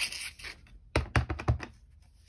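Folded cardstock card bases being slid and set down on a cutting mat: a brushing of paper, then three quick taps about a second in.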